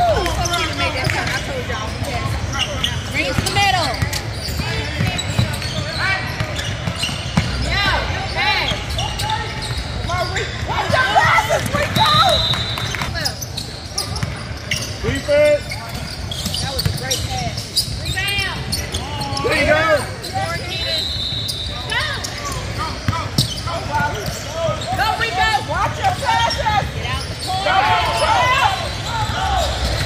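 A basketball bouncing on a hardwood court during a game, amid scattered shouting voices of players and spectators in a large gym hall.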